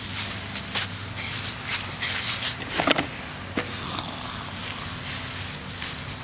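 Footsteps and rustling on a grass lawn: a few soft, irregular steps, the loudest about halfway through, over a steady low hum.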